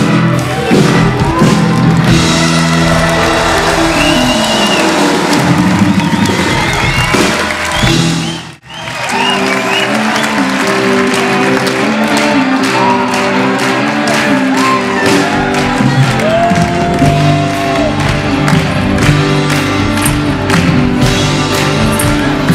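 A live rock band plays with electric guitars, and the crowd cheers along. The sound drops out for an instant about eight seconds in, then the music carries on.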